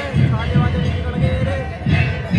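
Several large two-headed dhol drums beaten with sticks, deep strokes in a steady beat of about two to three a second, with voices over them.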